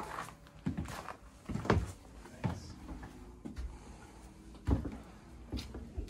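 Footsteps thumping irregularly on a wooden porch deck, with a door being opened.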